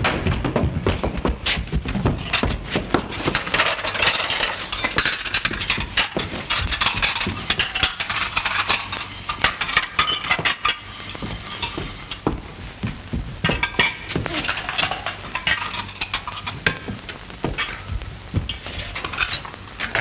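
Crockery plates, cups and cutlery clattering and clinking against each other and a wooden table as the table is set in a hurry, in many irregular knocks throughout.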